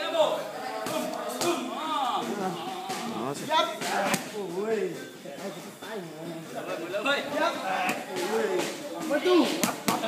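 Punches and kicks landing on a trainer's Muay Thai pads: sharp slaps and smacks at irregular intervals, several seconds apart. People's voices run underneath throughout.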